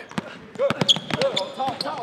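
Basketball being dribbled on a hardwood gym floor, a quick run of bounces echoing in the hall, with voices calling out over it.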